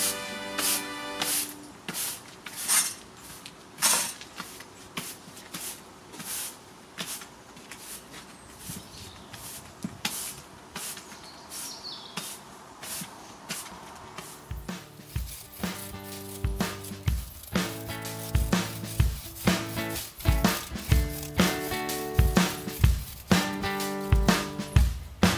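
Background music with a steady beat. The melody drops out for a stretch and returns about fifteen seconds in.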